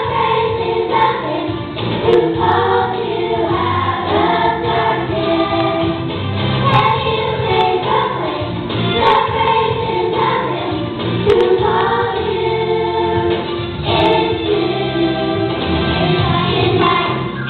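Young girls singing a Christian song through microphones, one girl's amplified voice leading in sustained sung phrases with other voices joining, over musical accompaniment.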